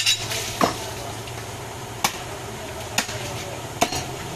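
Butcher's heavy knife chopping into a goat head on a wooden stump block: four sharp separate chops, roughly a second apart, the first one softer.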